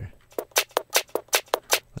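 Drum loop played back in Ableton Live's Repitch warp mode, transposed all the way up so it runs sped up and higher in pitch, like a forty-five on crack: a fast run of short, sharp hits, about eight to ten a second.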